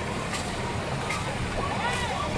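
Dragon boat race: a steady rush of noise with distant shouting voices and short sharp beats coming at a regular pace, a little under one a second.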